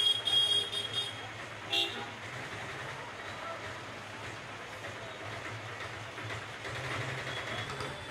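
Street traffic: a vehicle horn toots several times in quick succession in the first second and once more about two seconds in. After that comes a steady low hum of engines and street noise.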